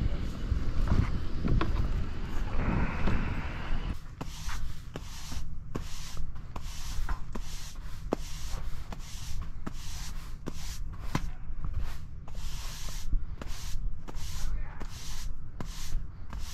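Push broom sweeping sand across pavers in quick, even strokes, about two a second, starting about four seconds in; it is clearing the leftover joint sand off the pavers before sealing.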